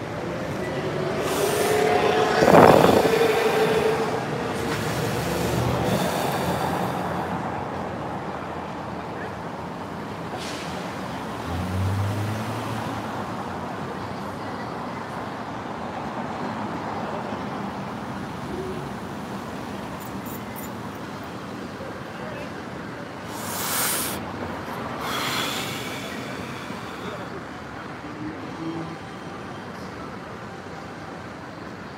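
Downtown street traffic with cars passing and people's voices in the background. The loudest moment is a vehicle sound a couple of seconds in, with a pitch that glides up and down.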